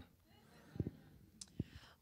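Handheld microphone handling noise in a quiet pause: two soft low thumps and a short click over faint room tone.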